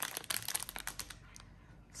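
Plastic packaging of a pack of bagged diamond-painting drills crinkling as it is handled: a dense run of small crackles in the first second that thins out toward the end.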